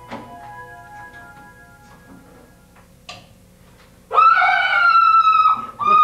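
Soft held music notes, then about four seconds in a woman's long, high-pitched scream, held for about two seconds with a slight fall in pitch.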